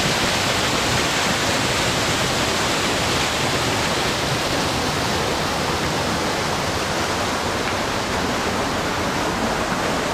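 Waterfall pouring onto rock: a steady, loud rush of falling water.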